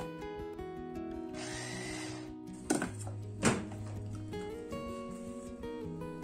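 Background music, with a brief burst of an immersion blender's chopper grinding soaked poppy seeds about a second and a half in, its pitch rising slightly. Two knocks follow.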